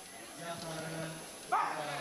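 A man's drawn-out shouting: one call held on a steady pitch, then a sudden louder cry about one and a half seconds in, as a mas-wrestling pull is under way.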